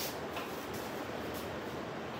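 Heavy rain pouring down outside, heard indoors as a steady even hiss.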